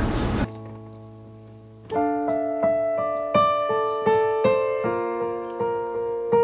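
Background piano music: a soft held chord, then from about two seconds in a slow, even melody of single struck notes, about three a second.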